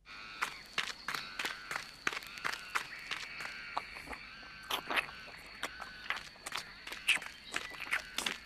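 Animation sound effects of crisp, irregular crunching footsteps on snow, about two or three a second, over a faint steady high whine.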